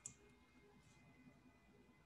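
Near silence: faint room tone, with one faint computer mouse click right at the start.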